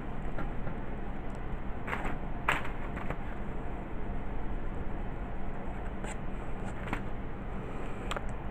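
Quiet room tone with a steady low hum, with a few brief soft ticks and light rubbing as a pencil and eraser are worked on drawing paper.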